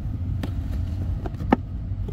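Two small sharp clicks about a second apart as a flat screwdriver is worked against the hard plastic inside a car's glove box, over a steady low rumble.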